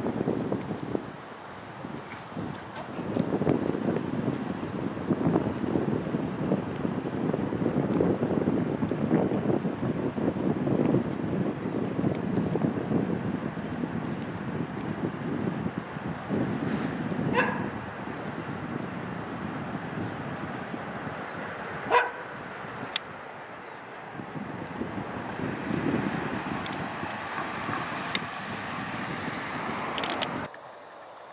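Wind buffeting the microphone, with a dog barking twice, briefly, about 17 and 22 seconds in; the second bark is the louder.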